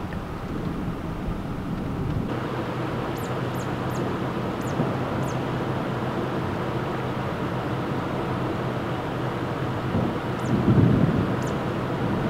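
Steady wind noise outdoors with a faint low hum underneath, a few faint high chirps in the first half, and a louder gust near the end.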